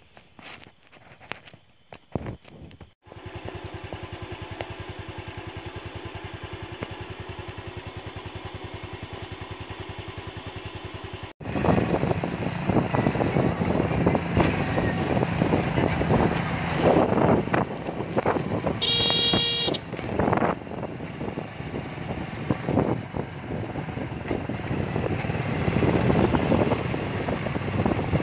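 Motorcycle engine running with wind rushing over the microphone while riding along a road, loud from about eleven seconds in; a horn toots once, briefly, about two-thirds of the way through. Before that comes a steady, evenly pulsing engine-like sound, preceded by a few faint clicks.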